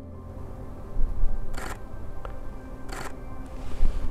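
Canon EOS R5 camera shutter firing in two short rapid bursts, about a second and a half apart, over steady ambient background music. A couple of low bumps are also heard, about a second in and near the end.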